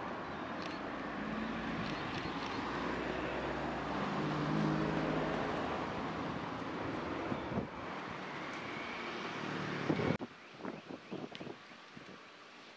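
A passing motor vehicle's engine and road noise, swelling to its loudest about five seconds in and then easing, with a few light clicks in the first couple of seconds. The sound cuts off abruptly about ten seconds in, leaving a quieter background with a few short knocks.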